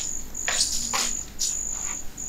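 Crickets chirping in a high, steady trill that breaks off and resumes about every half second, with a few short soft noises over it.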